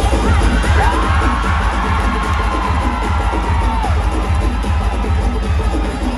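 Loud dance music with a heavy bass beat played through a theatre sound system, with the audience cheering over it and one long held cry or whoop that rises slightly and falls away, from about a second in to the middle.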